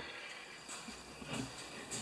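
Quiet room tone with a few faint, soft rustles, about three brief ones spread through the two seconds.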